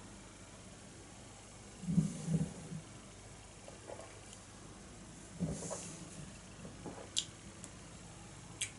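Quiet mouth sounds of a man tasting a stout: a short low swallowing sound about two seconds in, then a breath out with a low hum about halfway through. A few small clicks follow near the end.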